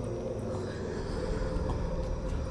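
Low, steady rumbling drone from a horror film's soundtrack, a held ambient tone under a tense, wordless scene.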